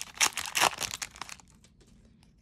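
Foil Double Masters booster pack wrapper crinkling as it is torn open by hand: a run of sharp crackles that dies away after about a second and a half.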